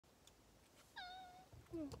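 A domestic cat meows once, a short call about a second in that dips slightly in pitch and then holds.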